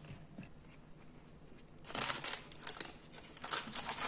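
Plastic packaging crinkling and rustling in short bursts as it is handled with rubber gloves, starting about two seconds in.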